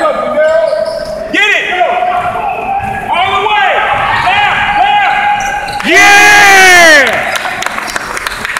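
Basketball sneakers squeaking on a hardwood gym floor as players cut and stop, a string of short squeals with the loudest and longest, about a second, around six seconds in.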